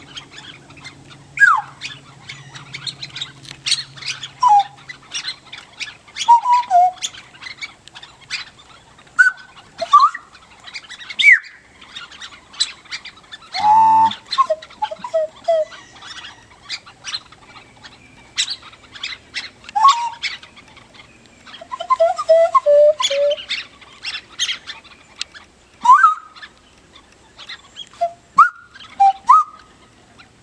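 Handheld bird-call whistles blown to imitate birdsong: many short chirps and quick rising and falling whistled notes, with one buzzy call about halfway through.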